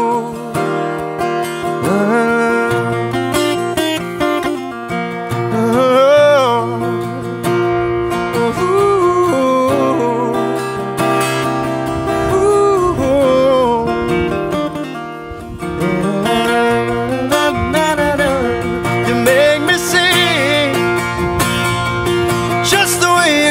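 Acoustic guitar strummed steadily, with a man's voice singing wordless runs over it, the pitch gliding up and down with wavering vibrato.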